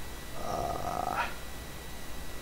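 A short breathy vocal sound from the person at the microphone, such as a sigh or exhale, lasting about a second and rising in pitch at its end.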